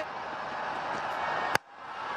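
Broadcast stadium crowd noise, a steady even hum, cut by one sharp click about a second and a half in, after which the sound briefly drops out.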